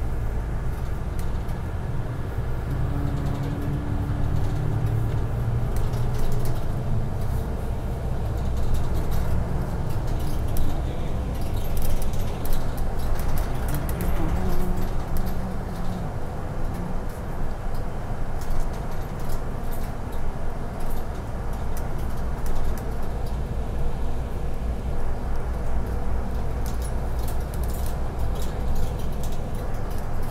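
Inside a city bus cruising along a road: the engine runs steadily under the tyre and road noise, with occasional light clicks and rattles from the cabin.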